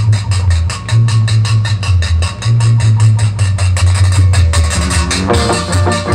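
Live jazz band playing an up-tempo number: a strong bass line under a brisk beat of about four strokes a second. Melody instruments join about five seconds in.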